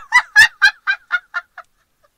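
A woman laughing in disbelief: a run of about eight short, high-pitched "ha"s, about four a second, each quieter than the last until it dies away.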